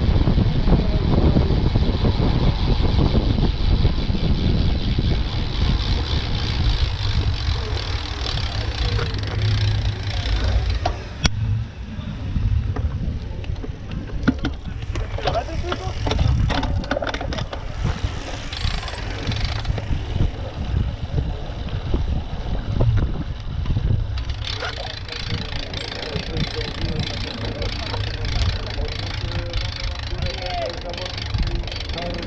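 Wind buffeting the microphone of a camera on a moving bicycle, a dense low rumble that is heaviest for the first few seconds, eases off for a while and picks up again near the end.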